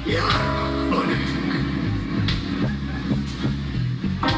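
Live pop-rock band playing a song: drums on a steady beat with bass and electric guitar, heard loud from the audience.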